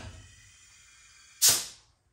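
A single short, sharp hiss of air about one and a half seconds in, fading quickly: air rushing into the rear air-ride bags as the rear end is aired up toward ride height.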